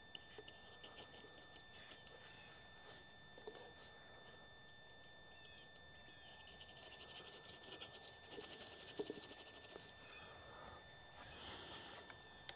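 Near silence, with faint scratching of a painting tool worked against the canvas: a quick run of fine strokes for about three seconds past the middle, and a few soft ticks earlier.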